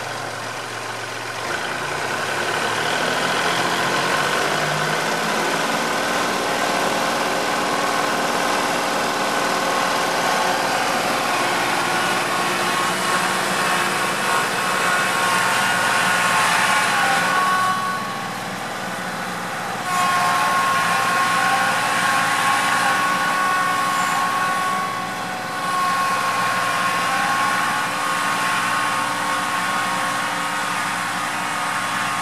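Kubota compact tractor's diesel engine working steadily as it pulls a subsoiler through soft, wet ground, with a high whine over the engine note. The engine picks up about a second and a half in and eases off briefly twice in the second half.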